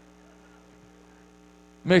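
Faint steady electrical mains hum, with a few constant low tones and nothing else. A man's speaking voice comes back in near the end.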